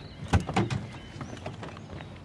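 A car door being unlatched and pushed open from inside: a quick cluster of clicks and thumps, loudest about a third of a second in, then a few fainter clicks.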